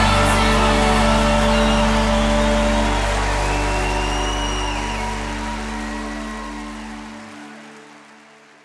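A sustained chord from the worship band, steady keyboard-pad tones over a deep bass note, ringing out at the end of the song and fading away gradually. The deep bass drops out near the end.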